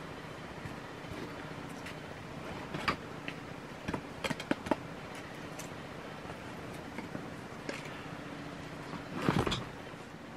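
Split sticks of firewood knocking and clicking against each other as they are handled and pulled from a canvas wood bag, with a few sharp clicks between about three and five seconds in and a louder rustle and knock near the end.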